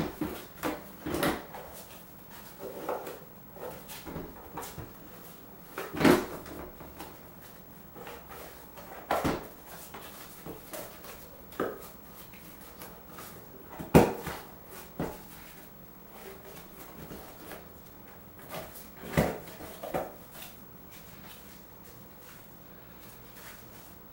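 Irregular handling knocks and rubber rubbing as a scooter tire and inner tube are worked together by hand, with a sharper knock every few seconds.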